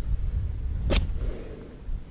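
Handling noise of a bicycle wheel and its half-fitted knobby mountain-bike tyre being turned over: a low rumble with one sharp click about a second in.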